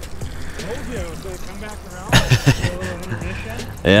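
Mostly speech: faint, indistinct talking, then a short loud outburst about halfway through, over a steady low rumble.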